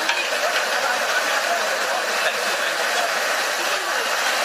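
Steady hubbub of a crowd in a hall: many indistinct voices talking under an even hiss, with no single voice standing out.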